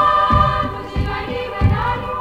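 Choir of missionary sister novices singing in held, sustained harmony over a low beat struck about every two-thirds of a second.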